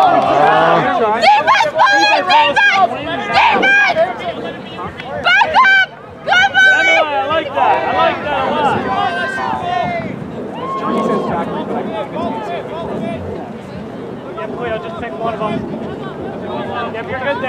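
Loud, overlapping shouted calls from players during quadball play: high, strained voices calling out through the first ten seconds, then a quieter mix of voices.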